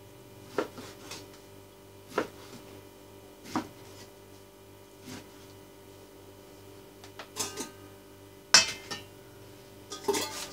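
Kitchen knife cutting beef on a wooden cutting board: single knocks of the blade against the board about every second and a half, then a few quicker knocks and one louder clatter near the end, over a steady low hum.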